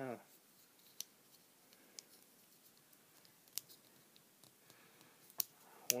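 Hard plastic parts of a Hasbro Transformers Prime Beast Hunters Megatron action figure clicking as it is handled and its parts are moved, a handful of separate sharp clicks spread a second or so apart, the loudest two near the end.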